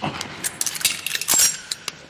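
A quick run of sharp metallic clicks and clinks with clothing rustle as a pistol is wrenched out of a man's hand in a fast disarm.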